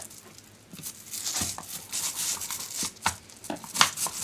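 Plastic housing of a Black & Decker Mouse detail sander being taken apart with a screwdriver: irregular clicks, scrapes and knocks of plastic and metal after about a second of near quiet.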